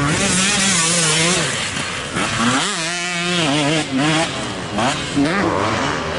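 Enduro motorcycle engines revving on a dirt course, their pitch rising and falling as the riders open and close the throttle and shift gear, with a clear rise and fall about halfway through.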